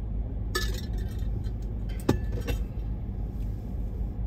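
Steady low rumble of city street traffic. Sharp metallic clinks and a short jingle cut in about half a second in, and again more loudly at about two seconds.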